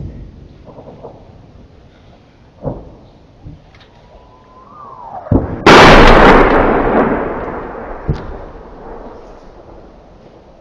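An incoming shell whistles for about a second, its pitch dropping sharply at the end, then explodes close by: a very loud blast about six seconds in that rumbles away over the next few seconds. Smaller thuds of other impacts come before and after it.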